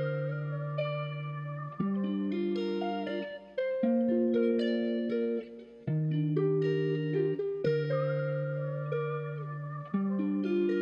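Melodic guitar loop from a trap-style instrumental beat: sustained, effected plucked notes forming chords that change about every two seconds, playing without drums.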